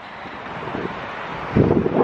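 Wind buffeting the camera microphone, building steadily, with a strong gust about one and a half seconds in.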